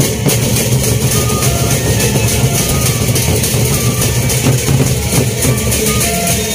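A Lombok gendang beleq ensemble playing: the big double-headed barrel drums beaten in a dense, unbroken rhythm, with cymbals clashing over them.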